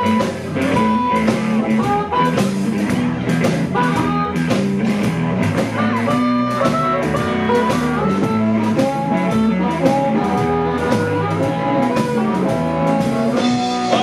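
Live blues band playing an instrumental break: a Fender Stratocaster electric guitar and a harmonica play bending melodic lines over electric bass and a drum kit keeping a steady beat.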